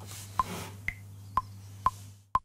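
Cubase's metronome counting in before recording: four short electronic clicks about half a second apart, the second one higher-pitched to mark the first beat of the bar, over a steady low hum.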